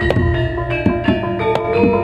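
Javanese gamelan playing dance accompaniment: ringing metallophone notes at several pitches, over drum strokes that come several times a second.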